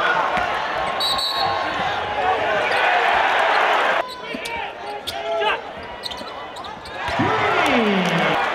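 Live game sound of an indoor college basketball game: crowd noise and voices in the arena, with court sounds of the ball and players. It drops suddenly about four seconds in and swells back up about a second before the end.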